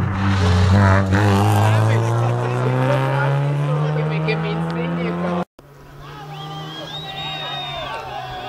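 Rally car engine accelerating hard, its pitch rising steadily for about five seconds before the sound cuts off suddenly. After the cut, another engine runs quieter and steadier.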